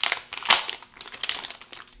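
A phone case's packaging crinkling as it is handled: a dense run of small crackles, loudest about half a second in, then trailing off.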